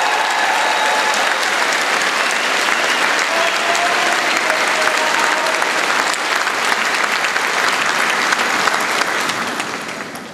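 A large audience applauding steadily, dying away near the end.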